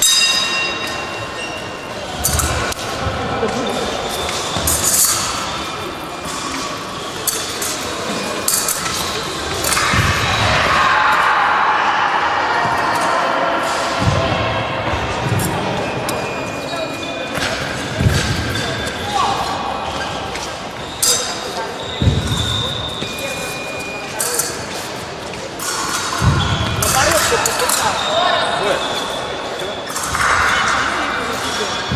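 Echoing fencing-hall ambience: scattered thuds of fencers' feet on the floor, sharp clicks and clinks of blades, short electronic beeps, and indistinct voices throughout.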